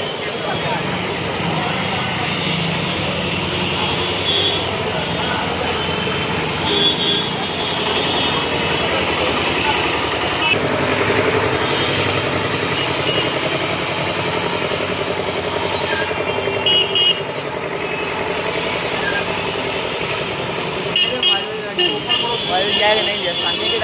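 Busy street ambience of motor traffic and passers-by's voices, with a few short vehicle-horn toots breaking through.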